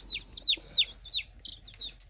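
Baby chicks peeping: a quick run of short, high peeps, each sliding downward in pitch, several a second.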